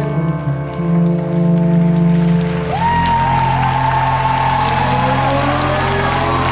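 Live pop-rock band holding sustained closing chords with a long held note over a steady bass, amplified through a concert hall. From about three seconds in, crowd applause and cheering build up under the music.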